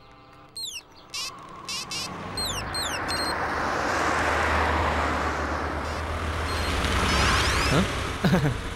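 Birds chirping in short high calls, then a van drives past close by: a broad road noise with a low engine rumble builds over a couple of seconds, stays strong, and swells again near the end.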